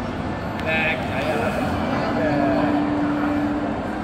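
Busy crowd chatter: many voices talking at once in a steady, dense murmur, with one voice briefly holding a note in the second half.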